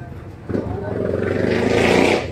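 A passing motor vehicle that comes in suddenly about half a second in, swells until near the end and then drops away, over the murmur of people talking.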